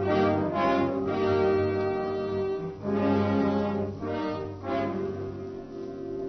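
Orchestral music bridge led by brass, with French horns and trombones holding sustained chords that shift a few times. It is a transition cue marking a scene change in a radio drama.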